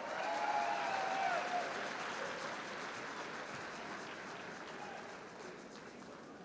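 Audience applauding, loudest in the first second or two and then slowly dying away.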